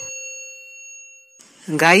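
A single bell-chime 'ding' sound effect for tapping a notification bell icon. It rings out in a clear metallic tone and fades, then stops about a second and a half in.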